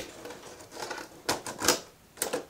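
Irregular clicks and knocks of small hard objects being handled, with two louder knocks past the middle.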